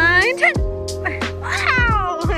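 Background music with a steady beat and held chords, and a high voice sliding up and down in pitch twice, near the start and again near the end.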